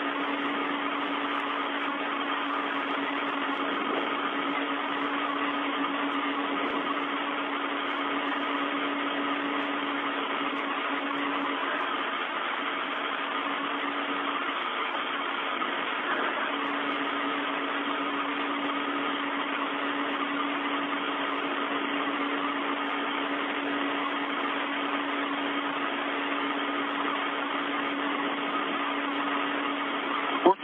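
Steady hiss of an open space-to-ground radio channel, with a steady low hum under it that weakens for a few seconds about midway.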